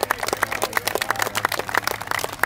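A group of people clapping their hands: many quick, overlapping claps at an irregular, dense rate.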